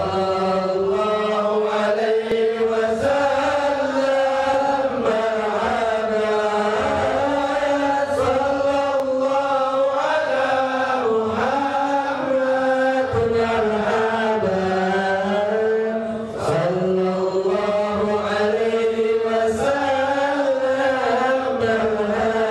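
Men's voices chanting an Islamic devotional chant together, one continuous melodic line with a steady low drone beneath, during raised-hands supplication.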